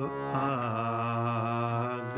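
Harmonium chords and melody sustained under a drawn-out sung kirtan phrase, the voice gliding between notes in a female-scale range.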